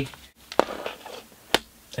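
Plastic CD jewel case being handled and set down on a table: two sharp clicks about a second apart, the second one louder.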